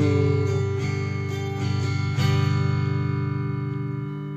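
Solid-body electric guitar strumming clean chords in a slow song, each chord left to ring, with a new strum about every second.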